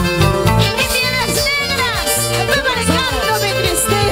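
Live Andean huayno music from a band of harp, violin, electric bass and drums, with a steady bass beat about two pulses a second under gliding melody lines.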